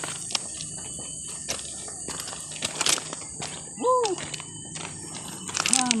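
Forest ambience with a steady high-pitched insect drone and scattered short clicks. A man gives a brief exclamation, "woo", about four seconds in.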